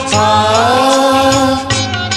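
Male singer holding a long sung "aa" over the backing music of a Hindi devotional song, the note sliding upward early on; the voice ends near the end and the instruments carry on alone.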